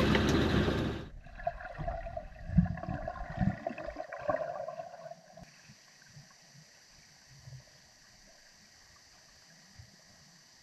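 Van road and engine noise for the first second, then heard underwater: water gurgling with a steady hum and a few low knocks, dying away about halfway through to a faint hiss.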